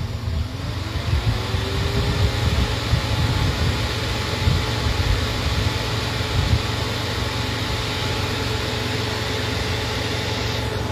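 An engine running, its pitch rising over the first two seconds and then holding steady, over a low, uneven rumble.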